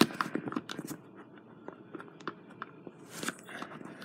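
Faint, irregular small clicks and taps of hands handling a small plastic portable radio.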